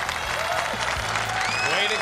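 Audience applause, an even spread of clapping, with voices starting over it near the end.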